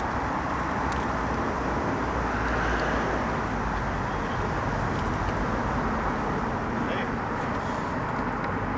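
Distant freeway traffic: a steady wash of noise from many vehicles at once, swelling slightly a couple of seconds in.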